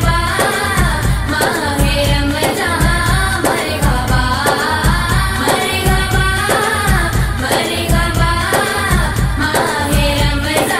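A male voice singing a naat in long, wavering melodic lines over a steady low beat that pulses about twice a second.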